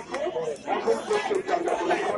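Crowd of football spectators chattering, many voices talking over each other.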